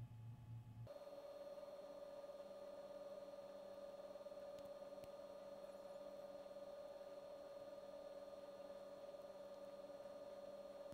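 Near silence with a faint steady hum. About a second in, a lower hum cuts out and a higher steady hum tone takes its place.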